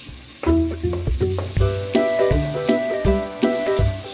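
Butter and a little oil sizzling in an aluminium caldero as the melting pieces of butter are stirred with a wooden spoon. A background music melody with a bass line plays over it.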